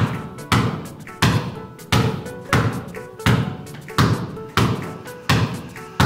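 A basketball dribbled low on a hard floor by a seated player, a steady bounce about three times every two seconds, each bounce echoing briefly in the room.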